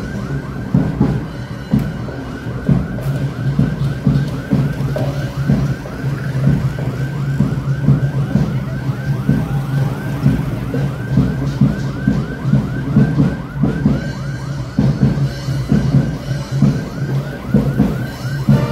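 Electronic siren in a fast yelp, about four rapid rises and falls a second, held without a break. Under it runs a loose beat of low drum thumps.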